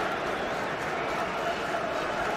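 Football stadium crowd: a steady din of many voices.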